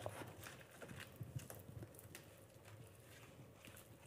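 Faint, irregular taps and slides of tarot cards being handled on a tabletop as the deck is gathered and squared up.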